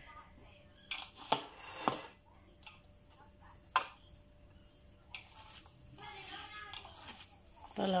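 A few sharp clicks and knocks of handling at the kitchen counter, spread over the first four seconds. Faint voices come in the background in the second half.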